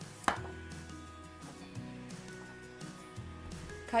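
A chef's knife chops through the stem end of an acorn squash and strikes the cutting board once, sharply, about a third of a second in, over soft background music.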